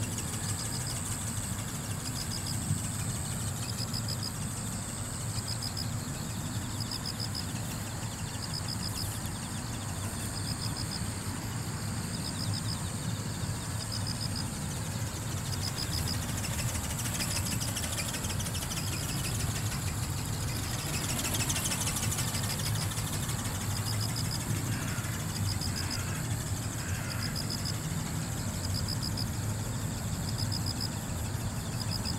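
Open-field ambience: a steady low rumble with a constant high-pitched trill and a short high chirp repeating about once a second. A faint whir swells and fades about twenty seconds in.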